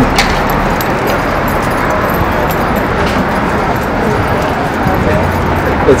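Steady city street noise with passing traffic, after a short laugh at the start.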